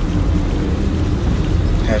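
Steady low rumble of engine and road noise inside the cabin of a moving minivan taxi.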